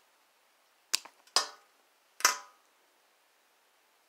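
Small jewelry wire cutters snipping earring wire: a few sharp snaps, a quick pair about a second in, then two more over the next second or so.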